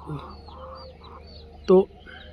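Free-range desi chickens clucking softly, with small high chirps among them. A single short spoken word cuts in near the end.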